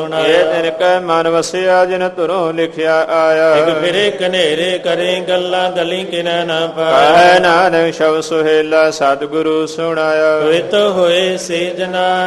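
A man's voice singing a Gurbani hymn in long, wavering, drawn-out phrases, the words stretched into melodic runs, over a steady held drone.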